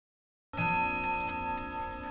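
A ringing, bell-like chime that starts suddenly about half a second in after dead silence and rings on with several steady tones, fading only slightly.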